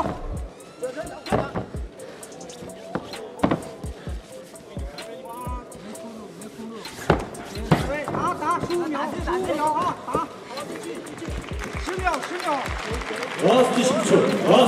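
Scattered sharp thuds and slaps from MMA fighters grappling and striking on the cage mat, with voices shouting in the second half and near the end.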